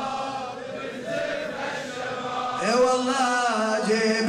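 A man's voice chanting a Shia mourning lament (nawha) in Arabic, in long held phrases that slide up and down in pitch, with a louder rising phrase near the end.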